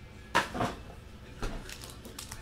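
A foil trading-card pack handled in the hands: three short crinkles.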